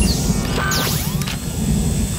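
Mechanical clicking and clatter of weapons being readied, over a steady low rumble.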